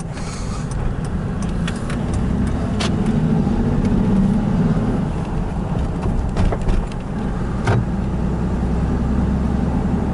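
Car cabin noise while driving: a steady low engine and tyre drone on the road, with a few light clicks scattered through it.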